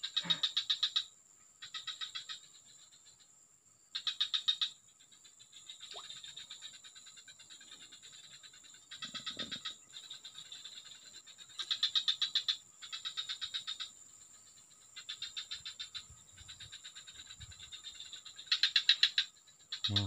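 A frog calling from the swamp: a run of rapid pulsed, rattling calls, each about a second long, repeated about eight times at uneven gaps.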